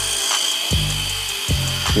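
Small electric motor of a K969 1:28 mini RC car spinning its drivetrain and wheels in short bursts, about three in two seconds, each starting abruptly.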